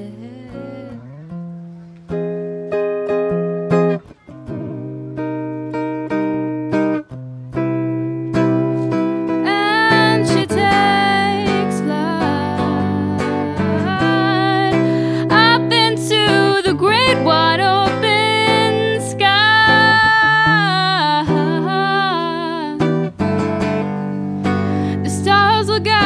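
Electric tenor guitar played solo in ringing chords, with a couple of short breaks. About nine seconds in, a young woman's singing voice joins it in long, wavering held notes over the strummed guitar.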